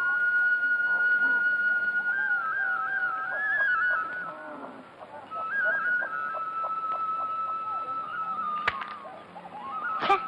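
Background score: a solo flute plays a slow melody of long held notes with quick ornaments, pausing briefly mid-way. A sharp click sounds near the end.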